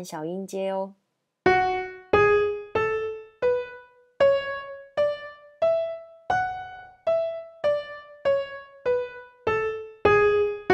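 Piano-toned keyboard playing a scale one note at a time, about one and a half notes a second, stepping up an octave and back down. It is the F-sharp natural minor scale, sounded as a demonstration.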